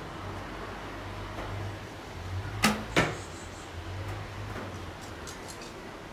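A longbow shot: the string is released with a sharp snap and a brief low twang, and about a third of a second later comes a second sharp knock, the arrow striking the target.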